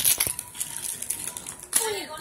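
Clear plastic packaging crinkling as it is handled, with a few sharp clicks at the very start.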